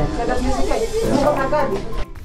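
Indistinct voices of several people talking, over light background music and a steady hiss of noise.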